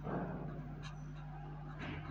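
Faint scratching of a pen writing on paper, a few soft short strokes over a steady low electrical hum, with a brief soft sound right at the start.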